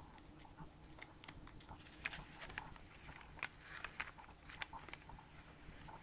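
Faint crinkling and scattered light ticks of folded origami paper being opened out by hand.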